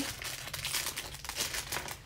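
Thin clear plastic bag crinkling and crackling in a steady, irregular patter as small hands pull it open and take out the small plastic pieces inside.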